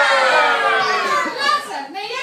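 Young children's and adults' voices, with one long drawn-out voice in the first second that slowly falls in pitch.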